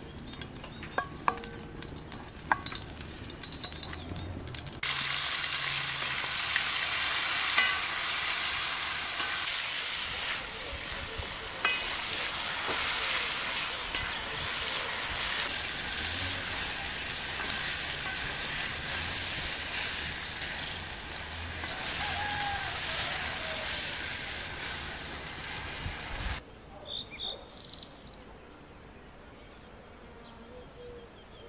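Food frying in hot fat in a cast-iron pan over a wood fire, a loud steady sizzle that starts suddenly about five seconds in, while a wooden spoon stirs it. The sizzle cuts off abruptly a few seconds before the end, leaving a few bird chirps.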